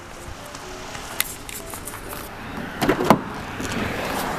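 Handling noise from a handheld camera carried by someone walking, with scattered clicks and a short, louder clatter of knocks about three seconds in.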